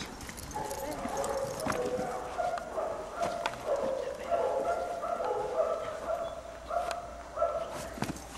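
Dog barking repeatedly, about twice a second, with a few sharp knocks among the barks.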